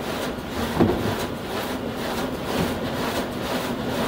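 Print-shop machine running steadily with a mechanical whir. A single thump comes about a second in.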